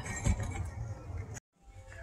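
Outdoor background noise picked up by a phone microphone, low rumble with a few faint clinks, cut off abruptly by an edit about a second and a half in, followed by quieter indoor store ambience.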